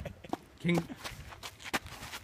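A few footsteps on a dirt ground, with a short burst of a man's voice partway through.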